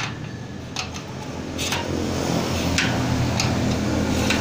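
A hand-worked steel slide bolt on a sliding gate frame giving a few sharp metal clicks, over a steady low hum.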